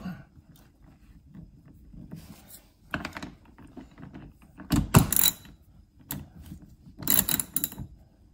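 Socket ratchet wrench tightening a bolt through a plastic mud flap: three short bursts of clicking and knocking, the loudest about five seconds in with a dull thump.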